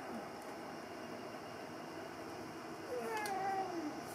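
A cat meowing once, about three seconds in: a single call of about a second, falling in pitch.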